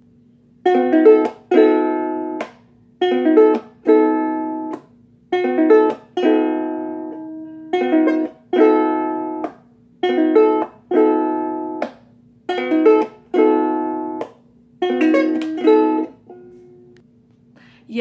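Aloha ukulele strummed by a beginner: the same basic chord, roughly a C chord, struck in pairs, a short strum then a longer ringing one, repeated about every two seconds, stopping a couple of seconds before the end.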